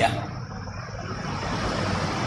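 A pause in speech filled by steady background noise, a low hum under a hiss, growing a little louder over the second half.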